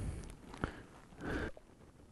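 Faint handling noises as a mouflon carcass is cut open on dry leaves with gloved hands: a sharp click about halfway through and a short rustle just after. The sounds stop suddenly about three-quarters of the way in.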